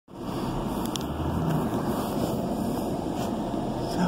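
Steady low rumble of a car's engine and road noise heard from inside the cabin, with a faint click about a second in.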